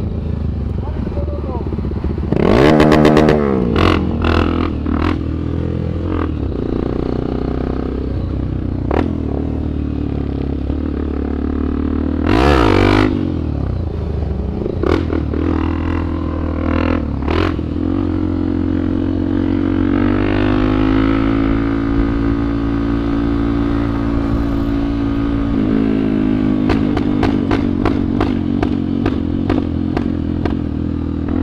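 Honda XRE 300's single-cylinder engine running under way, revving up and down with the throttle. There are two loud surges about three and twelve seconds in, and a long steady pull later on before it revs up again.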